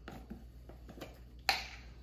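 Screw lid of an almond butter jar being twisted open, with faint small clicks, then one sharp click about one and a half seconds in.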